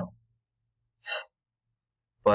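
A man's short breath in at the microphone about a second in, after the tail of a spoken word; otherwise near silence.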